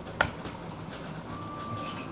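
One sharp click as a plastic e-liquid bottle is set down on a table, then faint room noise with a thin steady tone starting after the middle.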